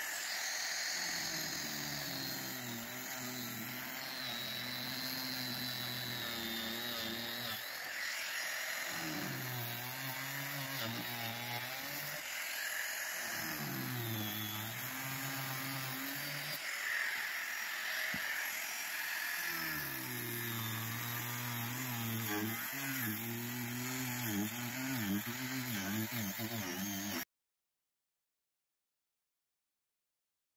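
Angle grinder with a cutting disc cutting through a lifeboat's glass-fibre (GRP) hull, running steadily with a wavering whine as the disc bites. The sound cuts off suddenly near the end.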